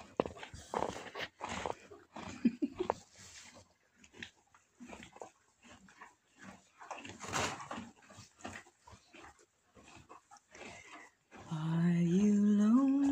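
Horse shifting in straw bedding and eating hay at a manger: irregular rustling and crunching with occasional breathy blows. Near the end a voice begins singing a slow, held melody.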